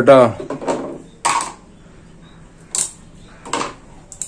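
A few short handling noises, light scrapes and knocks, from hands working on a wall fan's motor and its capacitor. There are three brief sounds spread over the seconds, with little in between.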